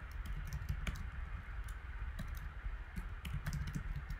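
Slow, irregular keystrokes on a computer keyboard as a short command is typed, one key at a time.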